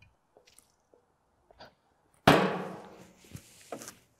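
A single hard knock on an empty steel oil drum a little over two seconds in, the drum ringing out and fading over about a second; a smaller knock follows near the end.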